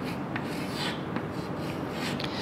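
Chalk drawing on a blackboard: a series of short scratching strokes as lines are sketched.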